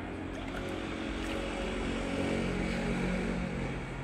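A steady low mechanical hum, a motor drone with several pitched tones over a low rumble.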